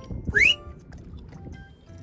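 Background music, with a quick rising whistle sound effect and a short burst of noise about half a second in, as a small fish is let go from fish-grip tongs over the sea.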